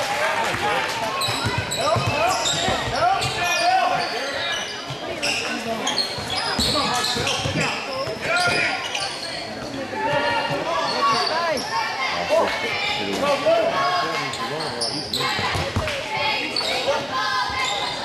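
Basketball dribbled on a hardwood gym floor amid steady crowd chatter, echoing in a large gym.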